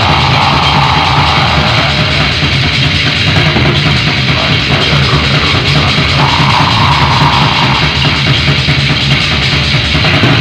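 Raw black metal from a lo-fi 1990s demo tape: distorted guitars, bass and drum kit playing loud and without a break, with a dull, treble-poor sound.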